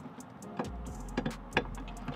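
Light metallic clicks of the small clevis pin and its retaining clip being worked out of the brake pedal pushrod clevis, three sharper clicks in the middle, over a faint low hum.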